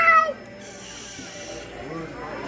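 A toddler's short, loud, high-pitched squeal right at the start, its pitch rising then falling over about half a second.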